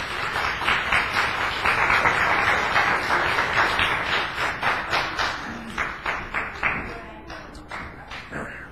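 Audience applauding, a dense patter of many hands clapping that thins out to a few separate claps and stops near the end.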